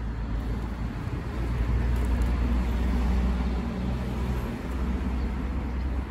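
Steady low rumble of outdoor background noise, such as distant road traffic, with a deep hum that dips briefly about two-thirds of the way through.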